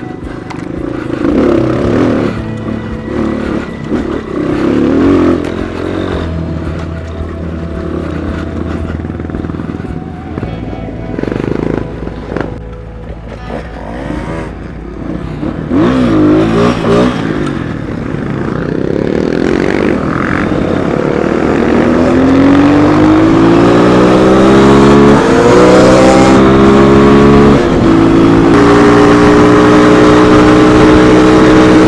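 Dual-sport motorcycle engine heard from the rider's own bike, running unevenly at low speed for most of the stretch, then accelerating hard on pavement from about two-thirds of the way in. Its pitch climbs steadily and drops back briefly at each of two upshifts near the end.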